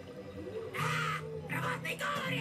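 A cartoon goblin's voice letting out two loud cries, the first about three-quarters of a second in and the second just before the end, over steady background music.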